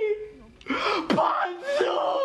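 A man wailing in anguish: two drawn-out wordless cries with bending pitch, the first starting just under a second in.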